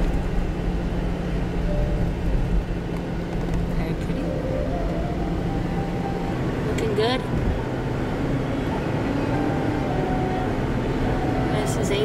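Steady low rumble of a car's tyres and engine heard from inside the cabin, driving on wet, slushy pavement, with a faint hum under it. A brief sharper sound cuts in about seven seconds in.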